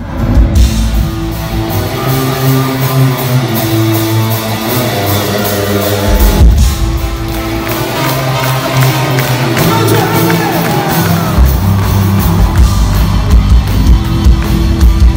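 Live rock band playing loudly in a large concert hall, heard from the audience: a singer over electric guitar, bass and drums, with crowd noise. The sound dips at the very start and jumps about six and a half seconds in where the footage is cut.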